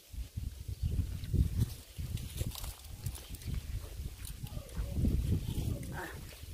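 Close-up chewing and mouth noises of a person eating fresh cherries, mixed with low, uneven rumbling from the phone being handled and brushing against leaves.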